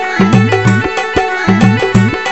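Instrumental passage of a Rajasthani devotional bhajan played live: a quick, even hand-drum rhythm with pitch-bending bass strokes under sustained melodic notes.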